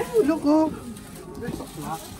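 A person's voice: a short low vocal sound in the first half-second, then quieter background voices.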